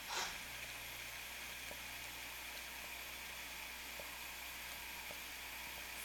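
Faint steady hiss with a low hum and a thin steady high tone, and a brief soft noise at the very start.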